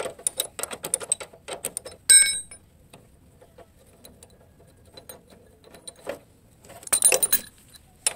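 Steel tools clinking on the lower rear shock absorber mount of a motorcycle: an L-shaped socket wrench clicks and rattles quickly as it turns the mounting nut, then one loud ringing metal clink about two seconds in. After a quiet stretch, a burst of metal clinks near the end as the shock absorber's eye is worked off its mounting stud.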